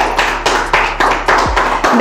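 A small group of people clapping, a quick run of uneven claps.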